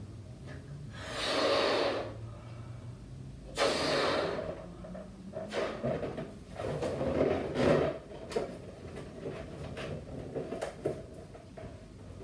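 A person blowing up a latex balloon by mouth. Two long, loud breaths go into it about a second and three and a half seconds in, followed by a run of shorter puffs. A few faint clicks come near the end.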